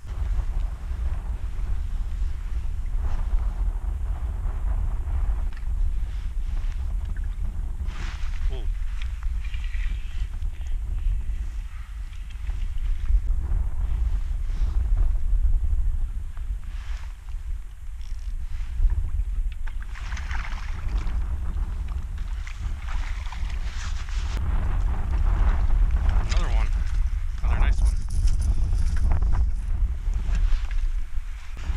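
Wind buffeting the microphone with a steady low rumble, over choppy water lapping and splashing around a kayak.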